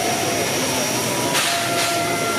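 Steam locomotive 555.3008 standing under steam, hissing steadily, with a louder burst of steam hiss about one and a half seconds in.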